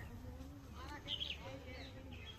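Faint, low buzzing of a flying insect close to the microphone, with a few faint high chirps just after the middle.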